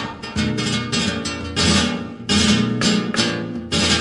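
Strummed flamenco-style Spanish guitar playing an instrumental passage of a song, in sharp rhythmic chord strokes with two brief breaks, from a 1986 cassette recording.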